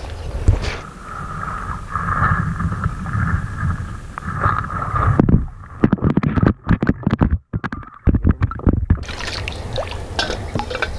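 Water splashing and churning as a person wades through a shallow creek and scoops at fish with a pot. From about five seconds in the sound is heard from under the water, muffled and dull with scattered knocks, and it opens up again near the end.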